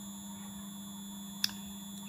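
Steady electrical hum with a faint high-pitched whine from a Vacon frequency converter just started as a grid converter, running with almost no load into its LCL filter. One sharp click about one and a half seconds in.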